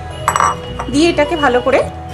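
A spatula clinking against a stainless steel pot while rice and soy chunks are stirred, with one short clatter soon after the start, over steady background music and a brief spoken word.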